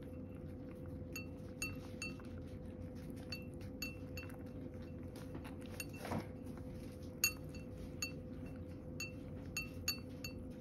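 A cat eating from a ceramic dish, the dish clinking about a dozen times at irregular intervals with a short ringing note each time, the loudest clink about seven seconds in. A faint steady hum runs underneath.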